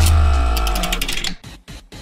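A short musical transition sting: a deep bass hit under sustained chords that fade out about a second and a half in, followed by a few faint clicks.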